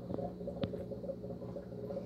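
Steady low hum with two faint clicks in the first second.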